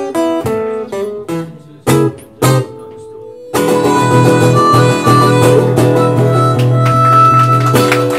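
Acoustic guitar picking a short run of single notes. About three and a half seconds in, a harmonica comes in with the guitar on a loud, held closing chord of a live blues song, which stops right near the end.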